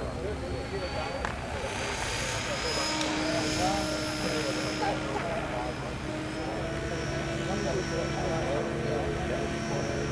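Radio-controlled model helicopter running on the ground, its rotor and motor giving a steady whine that sets in a couple of seconds in, with people talking in the background.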